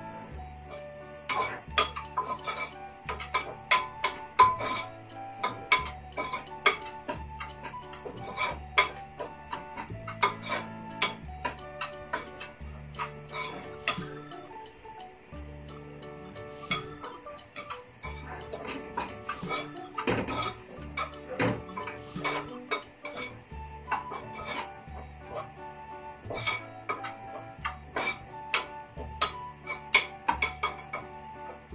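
A metal spoon scraping and clinking against a stainless steel saucepan in irregular sharp clicks, stirring flour into melted butter to cook a roux for white sauce, over background music.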